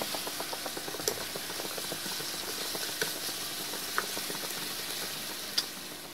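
Beef-skin (kikil) stir-fry, cooked down to a thick sauce with little liquid left, sizzling and crackling in a frying pan while a spatula stirs it, with a few sharp clicks of the spatula against the pan. The sizzle dies down slowly toward the end.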